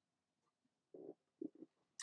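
A man swallowing a drink: two faint gulps, about a second in and again half a second later, with near silence around them.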